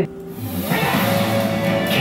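Television show theme music: a short broadcast bumper that swells in about half a second in, after a brief dip.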